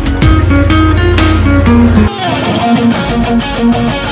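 Acoustic guitar played fingerstyle, plucked notes with percussive strokes over a deep sustained bass; about two seconds in the deep bass drops out and the playing thins to lighter plucked notes.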